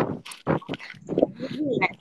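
A person's voice making short, broken sounds between sentences, not clear words.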